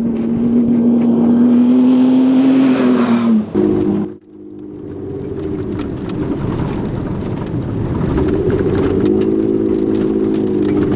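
A prerunner pickup truck's engine running at high revs as it speeds past on a dirt road, its steady note dropping about three seconds in as it goes by. After a brief break, engine and road rumble are heard from inside a truck's cab driving hard on a dirt track, building in level, with the engine note changing near the end.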